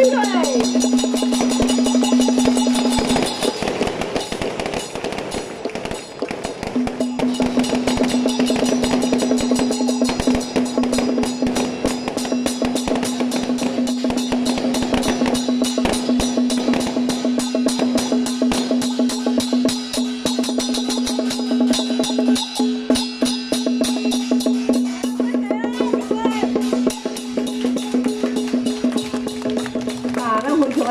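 Traditional procession music: drums with gongs and cymbals beating a fast, dense rhythm over a loud steady held tone. The held tone breaks off about three seconds in and comes back a few seconds later.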